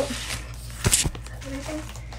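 A glossy black bubble mailer being handled as items are pulled out of it: a brief crinkle with a couple of soft knocks about a second in.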